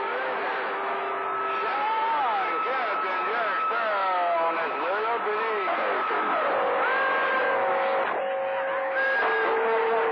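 CB radio receiver audio from channel 28 skip: band hiss with several steady whistles from overlapping carriers beating against each other, and warbling, sliding tones from garbled transmissions talking over one another. The whistles shift pitch and swap partway through.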